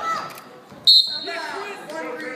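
A wrestling referee's whistle gives one short, shrill blast about a second in, the loudest sound here, as the bout ends. People are talking around it.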